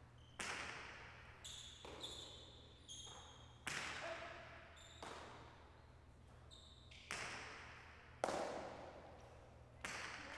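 A jai alai rally. The hard pelota cracks off the fronton walls and is caught and slung from wicker cestas about nine times, and each hit rings on in the hall's echo. A few short high squeaks fall between the hits in the first few seconds.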